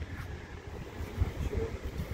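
Wind buffeting the camera microphone outdoors, a low, irregular rumble.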